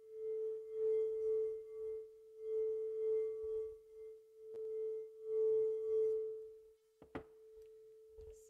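Frosted crystal singing bowl sung by a wand rubbed around its rim, giving one steady pure tone that swells and dips in waves. Near the end the wand comes away and the tone fades to a faint ring, with a click.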